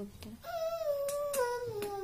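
A high voice humming one long note, starting about half a second in and sliding slowly down in pitch.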